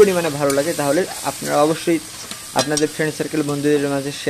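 Sliced onions sizzling in hot oil in an iron karahi, stirred and scraped with a metal spatula, with a person's voice over the frying.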